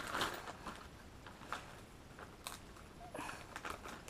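Faint crinkling and rustling of a thin plastic zip-top bag being handled, with a few sharper crackles scattered through.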